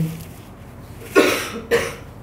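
A man coughs twice, two short sharp coughs about half a second apart a little past the middle, the first the louder.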